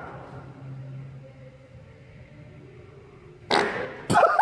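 Mostly quiet, then near the end a short, loud, noisy fart from a man straining to press a barbell on a bench.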